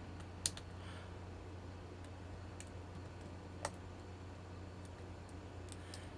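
Peterson Gem hook pick setting the pins of a vintage registered US mail padlock under tension: a handful of faint, scattered clicks, the sharpest about half a second in and another near the middle.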